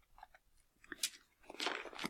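Thin Bible pages being leafed through by hand: soft paper rustles with a sharp crisp flick about a second in and more rustling near the end.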